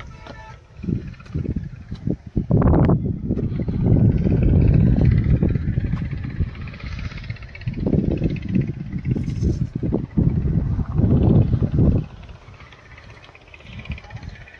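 Wind buffeting the phone's microphone: a low, gusty rumble that swells and fades several times and eases off near the end.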